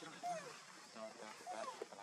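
A young macaque giving several short calls, each a brief tone that arches and falls in pitch: a hungry baby begging its mother to let it nurse.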